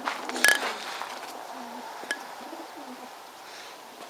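Racing pigeons cooing in the crates of a pigeon transport truck, a few short low coos, with a sharp click about half a second in.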